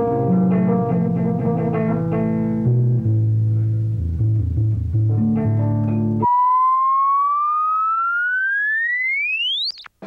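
Amplified electric music, deep held bass notes under changing chords, that stops abruptly about six seconds in. A single whistling electronic tone takes its place, gliding upward faster and faster for about three seconds, then cuts off suddenly.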